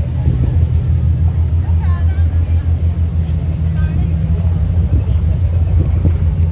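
A loud, steady low rumble with faint distant voices.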